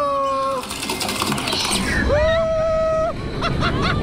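Roller coaster riders screaming over rushing wind and ride rumble: one held scream right at the start, then a second long scream from about two seconds in, with the low rumble growing louder as the train picks up speed.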